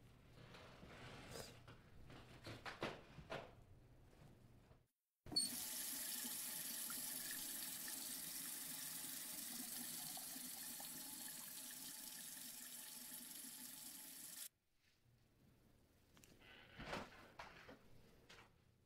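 Kitchen tap running water into a sink: a steady rush that starts suddenly with a click about five seconds in and stops abruptly about nine seconds later.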